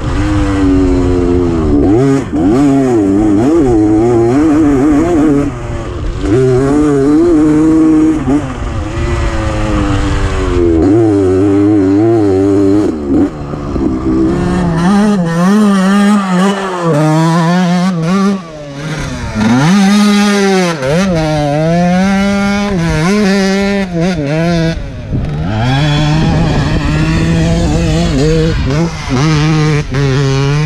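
The two-stroke engine of a 2011 KTM 250 EXC dirt bike running hard over sand, its revs climbing and falling again and again as the throttle is opened and closed through the gears.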